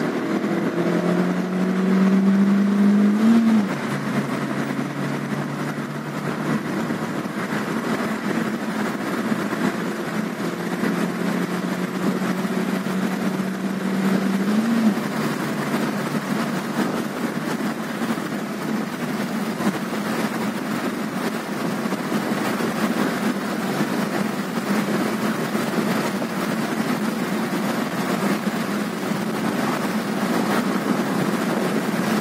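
Ravon Nexia R3's 1.5-litre four-cylinder petrol engine under hard acceleration, heard from inside the cabin. The engine note climbs, drops at an upshift about three and a half seconds in, and climbs again to a second upshift near fifteen seconds. After that it runs at high revs under steady road and wind noise.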